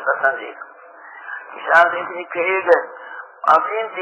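A man speaking, giving Quran commentary in Afaan Oromo, with the narrow, radio-like sound of an old recording.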